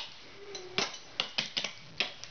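Metal clogging taps on the soles of dance shoes striking a wooden floor board as a loop and a basic step is danced. A quick run of sharp clicks starts about a second in.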